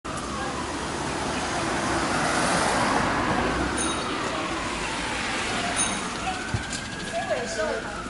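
City street traffic: vehicles passing with a steady rushing noise that swells and fades. Two brief high chirps come about four and six seconds in, and passersby talk near the end.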